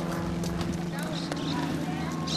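Horses walking past on a dirt trail, hooves knocking irregularly on the ground, over a steady low hum and faint voices.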